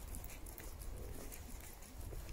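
Footsteps of a small dog and a person walking on asphalt, a faint irregular patter, over a low steady rumble.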